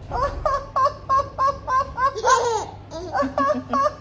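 A baby laughing in a run of short, evenly repeated giggles, about three a second, with a higher squeal about two seconds in. Lower-pitched laughter joins near the end.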